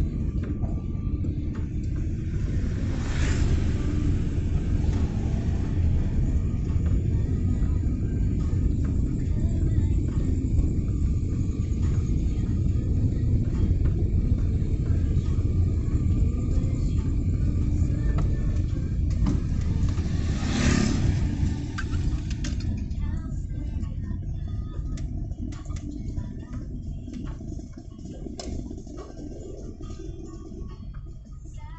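Steady low road and engine rumble inside a moving car, with an oncoming vehicle passing with a short whoosh about three seconds in and another about twenty-one seconds in. The rumble grows quieter over the last several seconds.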